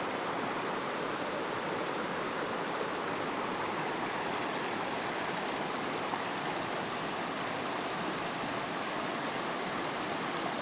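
A shallow, rocky river flowing over and around stones, giving a steady, even rush of water.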